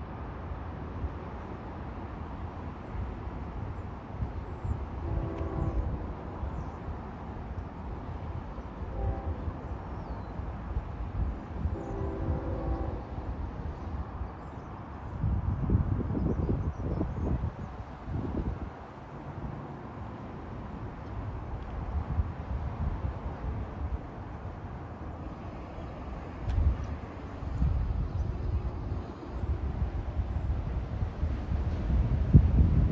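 Outdoor rumble with wind buffeting the microphone in gusts, and a distant train horn sounding briefly twice, about five and twelve seconds in.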